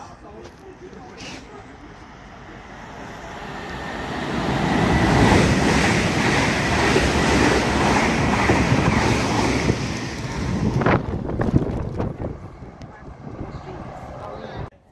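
ScotRail electric multiple-unit train passing at speed: a rushing noise that swells over a couple of seconds, holds with a faint steady high whine, then dies away with a few sharp clicks as the last carriages go by.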